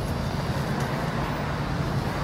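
A steady, low engine hum from a motor running in the background.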